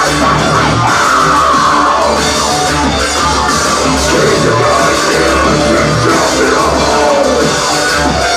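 A live industrial rock band playing loud, with electric bass guitar and a heavy drum beat running without a break.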